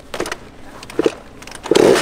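Two short knocks, then near the end a small two-stroke youth dirt bike engine comes in loudly and revs up and down.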